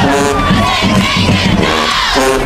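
Marching band members shouting together in a break in the music, loud voices over a little of the band.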